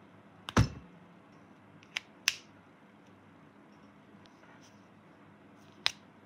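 Plastic marker caps being pulled off and pressed back on: a sharp click about half a second in, the loudest, two more a little after two seconds, and another near the end.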